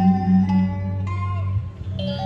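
Instrumental backing music: plucked guitar-like notes, one held note after another, over a sustained low tone that breaks off briefly near the end.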